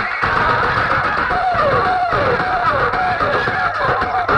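Loud music with a sung vocal melody, played through a stack of horn loudspeakers on a DJ sound system.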